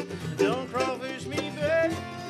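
Live acoustic bluegrass music: acoustic guitar and mandolin playing together, with a sung line over them that ends near the end.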